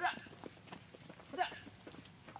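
A small pony's hooves trotting on packed dirt, a run of light, quick knocks. A person gives two short shouted calls to urge it on, one at the start and one about one and a half seconds in.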